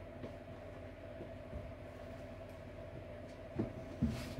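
Steady low background hum with a thin steady tone above it, and a soft knock near the end.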